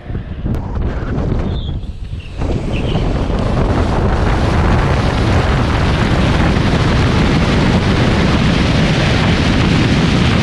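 Wind rushing over the microphone of a camera mounted on the side of a moving car. The noise is uneven for the first couple of seconds, then becomes a steady loud roar from about two and a half seconds in.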